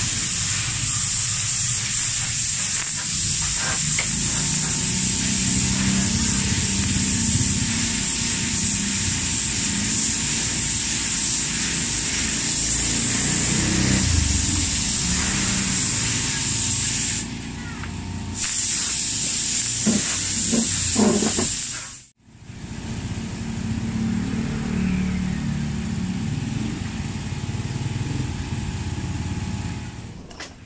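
Spray gun hissing steadily as it lays on a coat of urethane red paint, with a high whistle over a low rumble. The hiss eases off briefly in the second half, then cuts out for an instant and resumes.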